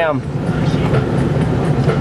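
Steady rumble and hiss of a moving car, road and engine noise heard from inside the cabin. A voice trails off at the very start.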